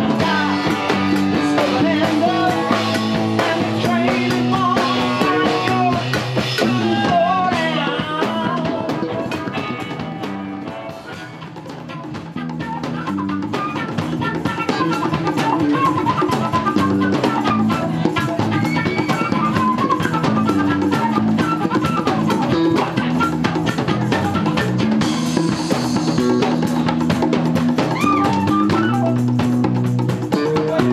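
Live band playing a rock jam with drum kit, electric guitar and tambourine. The music thins briefly about a third of the way in, and a flute carries a melody through the later part.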